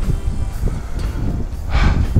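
Wind buffeting the camera microphone in irregular low rumbles, with a short breathy hiss just before the end.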